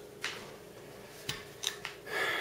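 A few faint, light clicks of metal rifle parts being handled as the Marlin 39A's two halves are brought together for reassembly, most of them in the second half.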